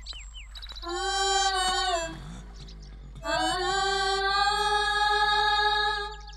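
Film background score: two long, held melodic notes, the first about a second in and falling slightly at its end, the second sliding up into a steady hold from about three seconds in.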